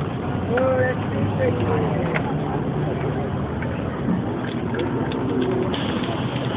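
Busy street ambience: indistinct voices and traffic noise, with a few short sharp clicks in the second half.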